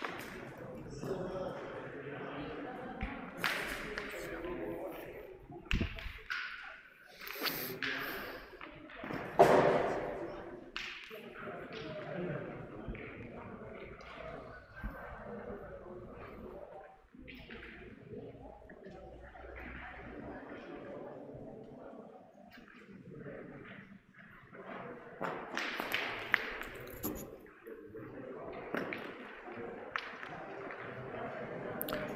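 Murmur of players' and spectators' voices echoing in a large indoor hall, with scattered sharp knocks and thuds; the loudest knock comes about nine seconds in. Near the end a thrown pétanque boule lands on the gravel among the others.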